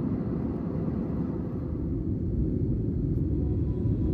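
Steady low rumble of airliner cabin noise from engines and airflow inside an Airbus A320-family jet during its descent.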